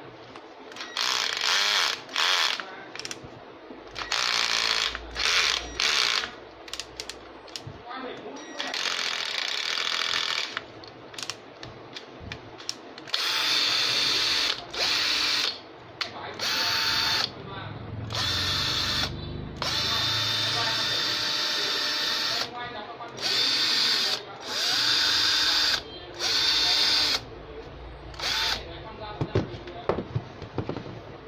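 A DCA ADJZ18-10E cordless drill's motor is run in repeated short trigger pulls, about fifteen bursts. Each burst lasts from under a second to about two seconds, starting and stopping sharply with a steady whine.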